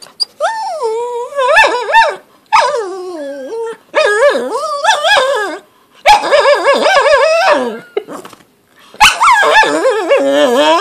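Shih tzu whining in about five long, wavering calls with short breaks between them. It is asking for its tennis ball, which is stuck under the fridge.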